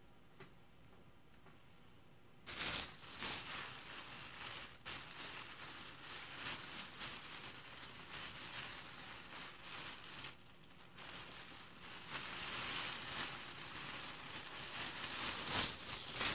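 Thin plastic shopping bag crinkling and rustling as it is handled and rummaged through, starting about two and a half seconds in, with a brief lull just past the middle.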